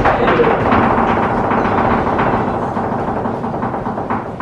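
A flamenco dancer's heeled shoes stamp once more on the wooden stage at the very start. Audience applause follows and slowly dies down as the footwork ends.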